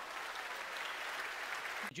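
Theatre audience applauding, with some cheering at first, fading slightly before a man's voice cuts in near the end.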